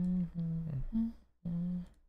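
A man humming a few low, held notes, with short breaks between phrases.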